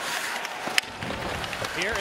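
Hockey arena crowd noise as a steady din, with a single sharp crack of puck or stick on ice or boards a little under a second in. The commentator's voice comes in at the end.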